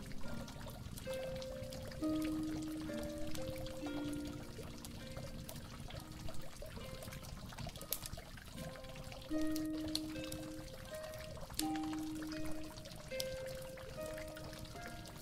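Slow, mellow harp melody of single plucked notes that ring and fade, over a steady sound of water pouring and trickling.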